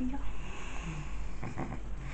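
A pug's noisy breathing through its short nose, close to the microphone.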